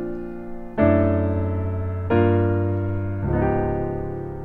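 Piano playing slow, sustained jazz chords, a new chord struck about three times in four seconds and each left to ring and fade. They are the opening chords of a I–vi–ii–V in B-flat major, dressed up with passing chords such as a mu chord and a tritone substitution.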